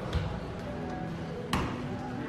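A soccer ball being kicked back and forth by foot, two sharp thumps about a second and a half apart.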